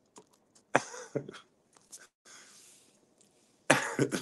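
A man coughing twice, short and breathy, about a second in, then breaking into laughter near the end.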